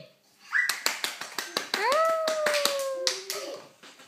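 A little girl's voice: a short high squeal, then a drawn-out vocal note that slides up, holds while sinking slightly, and ends on a brief lower note, with a rapid run of sharp taps and knocks throughout as she moves about on the sofa.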